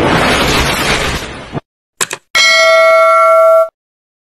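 Subscribe-button animation sound effects: a rushing noise for about a second and a half, then a quick click, then a bell-like ding that holds for over a second and cuts off suddenly.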